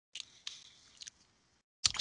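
Dead silence broken by three faint short clicks, about a quarter second, half a second and a second in.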